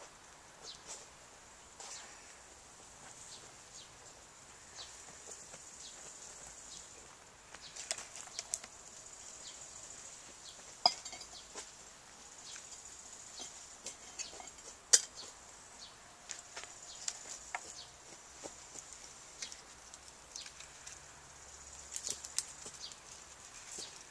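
Scattered light clinks and knocks of metal camp cookware being handled: a metal pot and an enamel mug with a spoon in it. The sharpest clink comes about fifteen seconds in.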